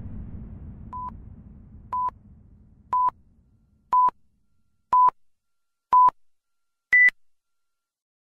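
Countdown timer beeps: six short beeps of one pitch, one per second, then a final higher-pitched beep marking zero. A low rumble fades out during the first few seconds.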